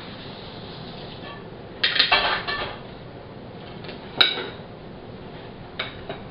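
Plates and cutlery clattering on a table as dessert is served: a quick cluster of clinks about two seconds in and one sharp, ringing clink about four seconds in.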